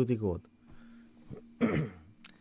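A man clears his throat with one short cough near the end, after a word trails off at the start.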